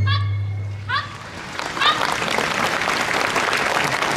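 The last stroke of the taiko drums rings out and fades over the first second, a couple of short high shouts follow, and then an audience applauds steadily.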